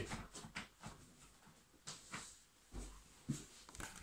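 Faint rustling and a few soft thumps of movement and handling, with light clicks scattered through and a low thump in the second half.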